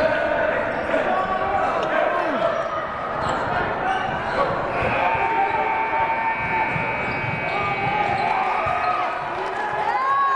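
Basketballs bouncing on a hardwood gym floor, with players' sneakers squeaking and voices of players and spectators echoing in the large hall.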